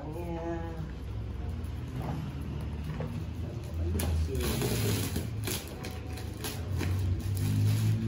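Black plastic wrapping on a large parcel being cut and torn open by hand: crackling and ripping, which comes in repeated bursts from about four seconds in, over a low steady hum.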